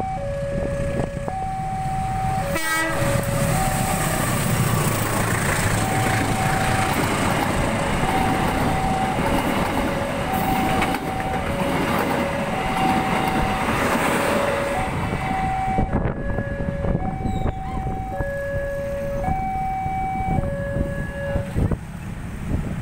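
Electronic level-crossing warning alarm sounding its alternating two-note chime throughout, while a train passes close by with a loud rush of wheel and car noise that dies away after about fifteen seconds. There is a short loud burst about three seconds in.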